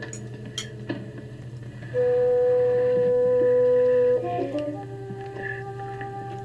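Film soundtrack music: after a quiet first two seconds with a steady low hum and a few clicks, a single loud held note sounds for about two seconds, then gives way to softer held notes that shift in pitch.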